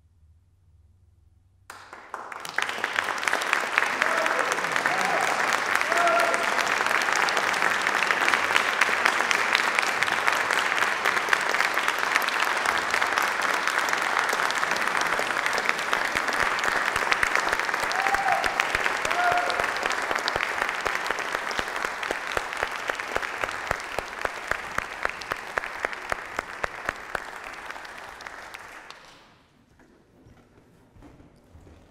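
Audience applauding after a cello and piano performance ends. The applause breaks out about two seconds in after a short silence, holds steady with a few brief calls from the crowd, and fades out just before the end.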